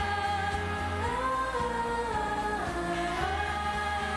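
Pop song with a sung melody that glides between long held notes over a steady bass backing.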